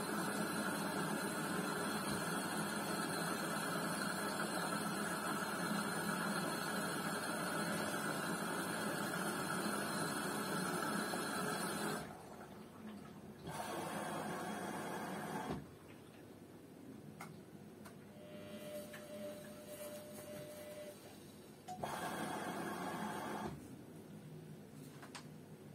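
LG intellowasher 5 kg front-loading washing machine running its wash, the drum turning the load: a steady run for about twelve seconds, then it stops and turns again in short runs of a couple of seconds with pauses between, a faint steady whine in one of the pauses.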